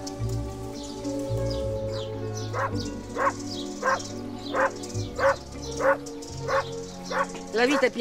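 A dog barking over and over, about eight barks evenly spaced roughly two-thirds of a second apart, starting a few seconds in, over soft music with long held notes.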